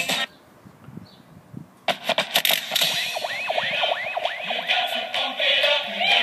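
Dance music playing through a small Wowee One portable speaker. The track cuts off just after the start, there is a near-quiet gap of about a second and a half, and a new track then begins with a run of falling swoops.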